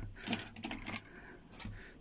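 A few light clicks and taps from handling on a tabletop as a coil of copper winding wire is moved on and off a pocket digital scale, irregularly spaced.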